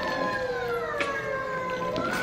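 Background music with long held notes that slide slowly downward, and a single light click about a second in.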